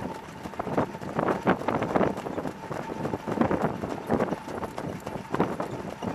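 Hooves of harness horses striking a dirt track at a jog, heard close up as a continuous, uneven patter of hoofbeats from several horses.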